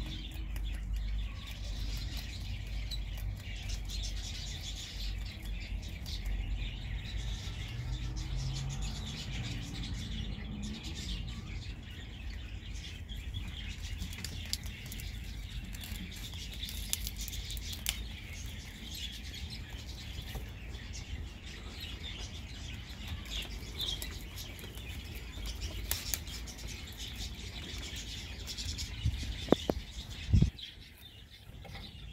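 Small birds chirping in the background over a steady low rumble.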